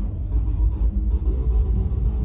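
Trance DJ set played loud over a festival sound system, with heavy bass dominating and held synth tones above it.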